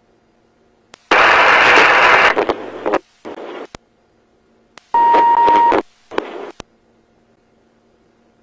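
Police radio channel keying up twice with no words: a loud burst of static about a second in, and another about five seconds in that carries a steady beep. Each burst opens and closes with a sharp click.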